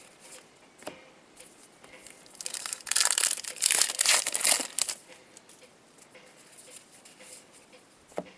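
A baseball card pack's wrapper being torn open and crinkled, loud for about two and a half seconds starting a couple of seconds in, with faint card handling before and after.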